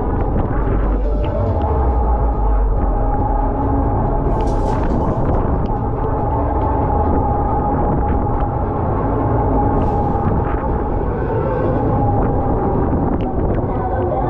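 Onboard sound of a Mondial Shake R5 fairground ride in motion: loud music and an indistinct voice from the ride's speakers over a steady low rumble of the ride and wind on the microphone. Two short hissing bursts come about four and a half and ten seconds in.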